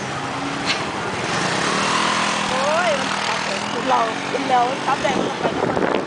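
Motor scooter engine running as it rides off and along the street, with a steady hum under road and wind noise. Voices speak briefly in the middle.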